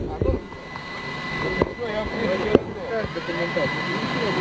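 A steady engine drone with a steady high whine coming in about a second and a half in, broken by two sharp clicks about a second apart.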